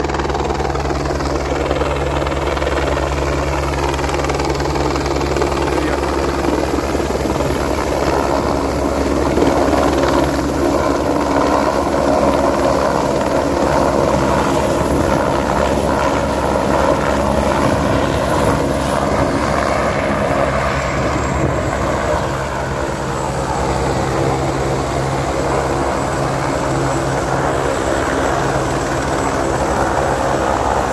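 Single-engine light helicopter coming in to land, its rotor and turbine running steadily. It then keeps running on the pad with the rotors turning.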